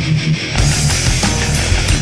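Heavy metal band recording with electric guitar, bass and drums. The bass thins out briefly at the start, and the full band comes back in with the drums about half a second in.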